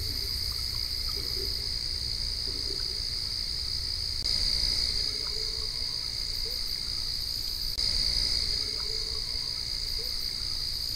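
A steady, high-pitched chorus of small calling animals, of the frog-and-insect kind, that swells for about a second twice. A few faint short lower calls sound over it, with a low rumble beneath.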